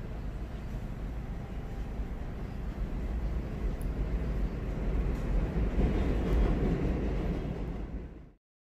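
Rumble of a passing elevated subway train, steady at first, growing louder over the last few seconds and then cutting off suddenly.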